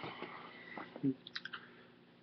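Faint handling noises: scattered soft clicks and rustles as a sneaker is picked up and brought to the webcam's microphone.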